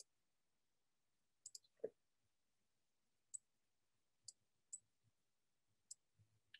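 About seven faint, sharp clicks at irregular intervals, typical of a computer mouse being clicked while trying to get the slides to advance, with one short, soft, lower sound about two seconds in, the loudest thing heard.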